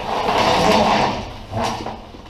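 Rustling and scraping of a fabric camouflage bag as it is handled and rummaged through: one long rustle over the first second and a half, then a shorter one near the end.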